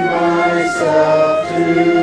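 A congregation of mixed voices singing a hymn together from hymnbooks, holding each note and moving to the next every half second or so.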